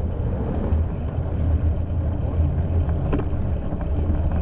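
Bicycle riding over packed snow: a steady low rumble of wind and tyre noise on the handlebar camera's microphone, with a few faint clicks.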